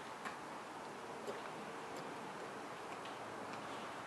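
Steady low hiss with a few faint, irregular small clicks scattered through it.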